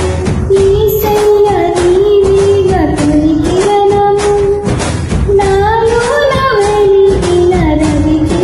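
A young woman singing a Telugu Christian song over a karaoke backing track, holding long notes that step up and down in pitch over a steady beat.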